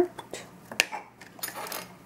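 A few light clicks and taps, the sharpest about a second in, as a plastic lid is pulled off a container of homemade yogurt and set down on the table.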